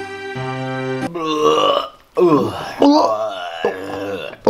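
Music with steady held chords for about the first second, then a loud, drawn-out guttural vocal noise like a burp, wavering in pitch, with a short break in the middle.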